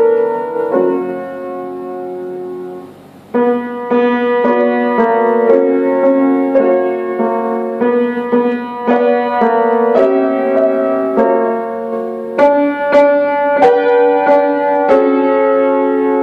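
Grand piano played four hands as a duet. A chord is held and fades away, there is a brief near-pause about three seconds in, and then the piece goes on with steady, rhythmic chords and melody.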